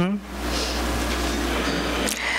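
A steady low rumble and hum of room noise, with a faint steady tone above it, fills a pause in the speech.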